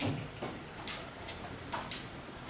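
Chalk tapping and scraping on a blackboard in about five short strokes, a little under half a second apart, the first the loudest.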